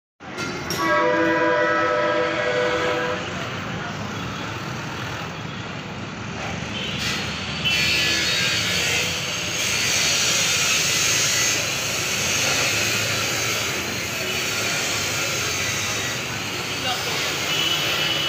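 A vehicle horn sounds a steady multi-tone chord for about two seconds near the start, over continuous street traffic noise. A few shorter, higher tones come in about halfway through.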